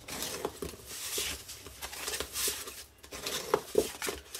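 Bone folder scraping along the score lines of glitter-coated paper, a gritty scratchy rub in several passes, with paper rustling and a few light taps near the end.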